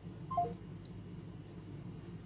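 A three-note electronic call-ended tone: three short beeps stepping down in pitch, about a third of a second in, as a caller's line disconnects. A faint steady low hum follows.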